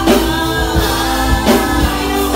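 Live gospel worship song: a group of singers on microphones, with a band's drum kit and bass keeping a steady beat of about two hits a second.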